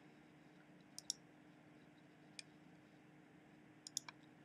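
Computer mouse clicks while navigating menus: a pair about a second in, a single click near the middle and another pair at the end, over near silence with a faint steady hum.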